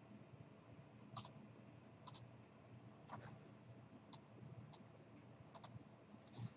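Faint computer mouse clicks: a few single and paired clicks spread over several seconds, with quiet between them.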